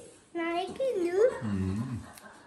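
Wordless voice sounds: a high voice gliding down and back up in pitch, then a much lower voice briefly near the end.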